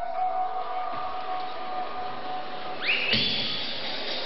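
Live rock band playing through amplifiers: a held, ringing note for the first few seconds, then a rising slide and the full band coming in loudly about three seconds in.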